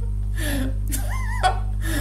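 A man laughing hard: a gasping breath, then a short high, wavering squeal of laughter about a second in.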